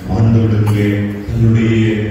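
A man's voice over the church microphone, intoning in a drawn-out, chant-like monotone: two long held phrases with a short break between them.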